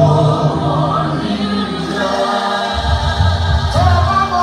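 Live gospel music: a church choir singing with a lead singer over band accompaniment. The low bass drops out briefly about halfway through.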